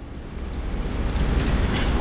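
A low, noisy rumble with a hiss above it, growing louder over the two seconds.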